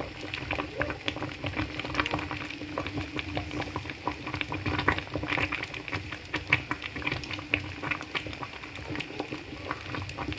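Thick okra and ogbono soup bubbling in a pot, with a dense, irregular popping of bubbles over a steady low hum.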